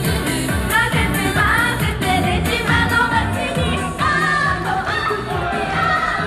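Japanese idol pop song performed live: female singers sing into handheld microphones over a pop backing track with a steady beat.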